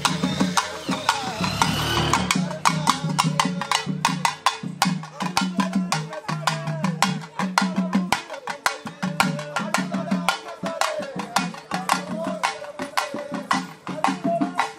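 Procession drums beaten with sticks in a fast, driving rhythm of several strokes a second, over a steady low tone and a wavering higher tone.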